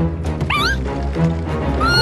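Cartoon background music with a small cartoon creature's wordless voice: a short rising cry about half a second in, then a wavering, warbling tone starting near the end.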